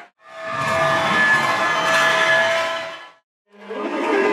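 Music, faded in and out in a snippet about three seconds long, with brief drop-outs to silence either side, as at edit cuts.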